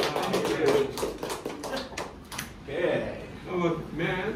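Scattered applause from a small audience, a run of quick, uneven hand claps that dies away about two and a half seconds in, followed by voices.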